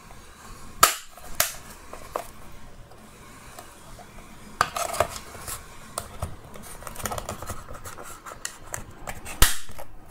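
Plastic clips of a Dyson V6 battery pack's case snapping into place as the two halves are pressed shut: a series of sharp clicks, loudest about a second in and near the end, with lighter plastic ticks and rubbing between.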